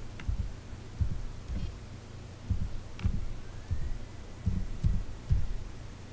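Typing on a computer keyboard, heard mostly as about ten dull, low thumps at an uneven pace, a few with a short sharp click.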